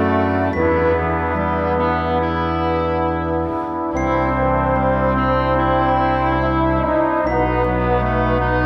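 Instrumental ensemble music: flugelhorns, French horn, trombone and tuba with clarinet and flute, playing slow held chords over a deep bass. The chord changes about half a second, four seconds and seven seconds in.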